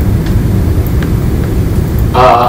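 Steady low rumble of room background noise between spoken sentences, with a couple of faint ticks.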